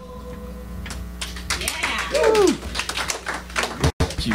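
The last strummed chord of an acoustic guitar song fades out, then a small audience breaks into scattered clapping and a voice calls out.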